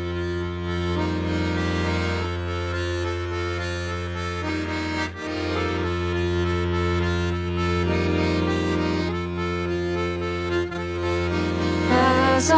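Accordion playing slow sustained chords over a steady low drone, the chords changing every second or two, as the instrumental introduction to a folk song.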